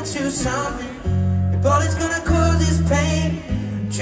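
Live concert music: a man singing with acoustic guitar over long, steady low bass notes that change every second or so.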